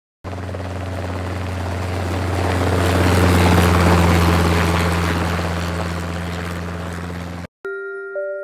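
Helicopter sound effect: a steady rotor chop and engine hum passing by, growing louder to about the middle and then fading, cut off suddenly near the end.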